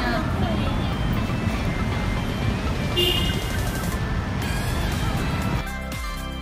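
Steady traffic and street noise with faint voices. A brief high tone sounds about three seconds in, and background pop music with a steady beat starts near the end.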